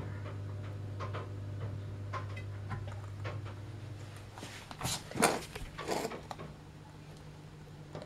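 Camera handling noise: a few soft knocks and rubs as the camera is shifted against the aquarium glass, loudest about five seconds in, over a low steady hum.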